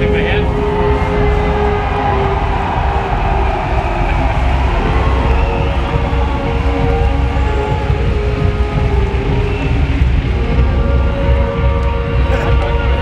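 Loud live rock-concert music from the stage, heard from the wings: a heavy, steady bass with long held notes over it.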